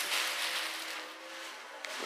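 Faint steady hiss with a low hum that fades away, and a single sharp click near the end.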